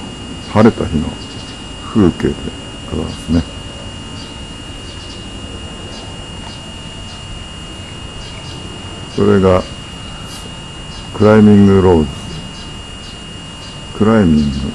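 A person's voice in short utterances: a few brief ones in the first few seconds, then two longer ones about nine and eleven seconds in. Under them runs a steady hiss with a thin, constant high whine.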